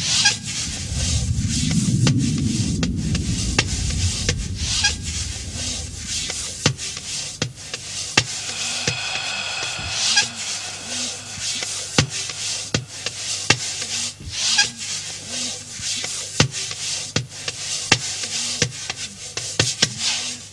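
Film soundtrack of sound design: a low rumble for the first few seconds, then a steady run of sharp ticks a little faster than one a second, with whooshing swells and a brief ringing tone about halfway through.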